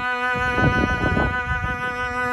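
Newly made cello bowed, holding one long sustained note, with uneven low noise coming and going beneath it.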